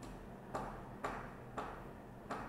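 Faint, sharp ticks about half a second apart, three in all, over a low steady hum.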